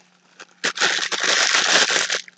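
Thin clear plastic bag crinkling and crackling as a packet of wrist wraps is handled and pulled out of a box. It starts about two-thirds of a second in.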